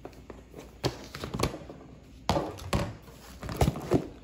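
Hard plastic storage bin being opened and its contents handled: a series of irregular knocks and clacks of plastic, some with brief rustling.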